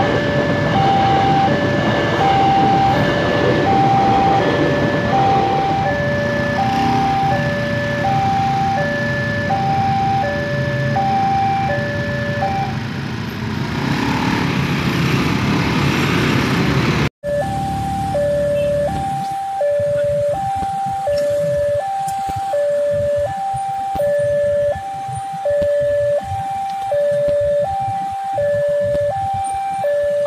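Railway level-crossing warning alarm sounding a steady alternating two-tone electronic chime, a little under a tone per second. For the first half it plays over the rumble of a passing KRL electric commuter train, which fades away by about 14 seconds. After that the alarm goes on alone over faint low background noise.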